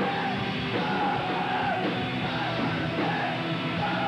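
A 90s emo/hardcore band playing live, with electric guitars and drums and a singer yelling over them.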